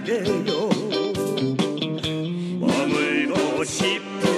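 Instrumental break in a Korean trot song: a guitar lead plays bending, wavering notes over the band's steady drum beat.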